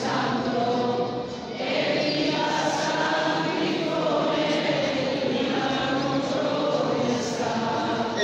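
Many voices singing a hymn together in a large church, with a short break between phrases about a second and a half in.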